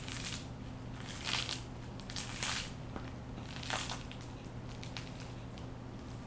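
Bamboo sushi mat rustling and crackling in four short bursts as it is pressed and rolled tight around a nori roll.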